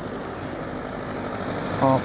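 City street traffic noise: a car driving slowly through the intersection, a steady low engine and tyre sound without sudden events.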